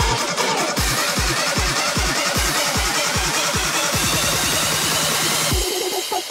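Electronic dance music mixed live by a DJ, driven by a steady kick drum at about two beats a second. A low bass line comes in about two-thirds of the way through, and the kick drops out briefly near the end.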